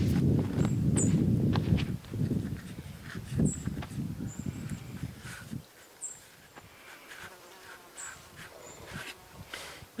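A knife trimming pie pastry on a plastic cutting board, with faint clicks and scrapes. A short high chirp repeats about every two and a half seconds, and a low rumble in the first half dies away after about five seconds.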